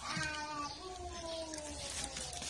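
An animal's call: one long, drawn-out note that falls slowly in pitch over nearly two seconds.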